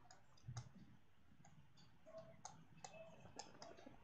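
Faint clicks and taps of a stylus writing on a pen tablet: a soft thump about half a second in, then a run of quick light ticks, most of them in the second half.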